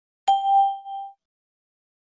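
A single bell-like ding about a quarter second in, one clear tone with fainter higher overtones, dying away within about a second. It is a cue chime in a recorded language-listening exercise, sounding between two readings of the same test sentence.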